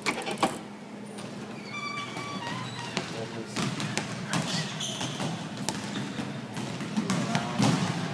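Basketballs bouncing on a hardwood gym floor, a series of short thumps coming thicker from about three seconds in. A door's push-bar latch clunks as it opens at the very start.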